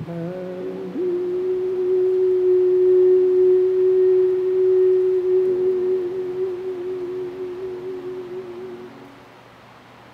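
A church hymn ending on one long held note that starts about a second in, wavers slightly toward its end and fades out about nine seconds in.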